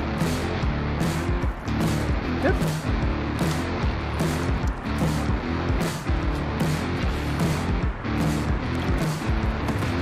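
Background music with a steady beat, about two strokes a second, over a sustained bass line.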